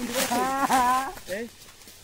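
A rooster crowing: one drawn-out call lasting about a second, followed by a few short, clipped notes.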